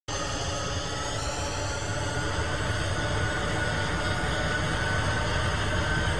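Jet airliner engines running, a steady rumble and hiss with a thin whine that slowly rises in pitch.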